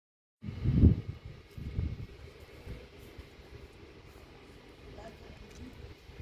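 Low, irregular rumbling buffets on the microphone, strongest about a second in with a second one near two seconds, then a faint steady outdoor background.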